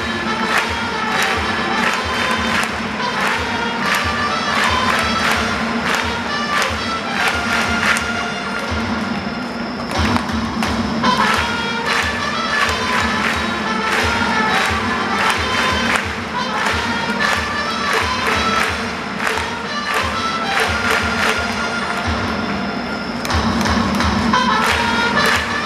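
A stadium cheering section playing: drums beating steadily under a trumpet tune, with the crowd chanting along.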